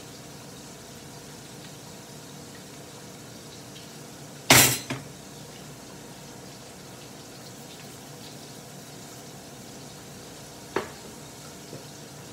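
Kitchenware clatter while cooking: one loud, sharp clank about four and a half seconds in, a lighter knock just after it, and a small click near the end, over a steady low background hiss.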